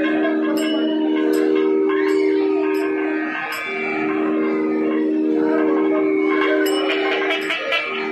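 South Indian classical instrumental music: a steady reed-like drone, a gliding melodic line above it, and light metallic strikes, about one every 0.7 s in the first half and a quick cluster near the end.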